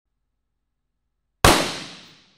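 A single rifle shot, one sudden loud bang about a second and a half in that dies away in a fading echo.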